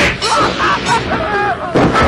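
Fight sound effects: a sharp hit at the start and another near the end, with shouting in between.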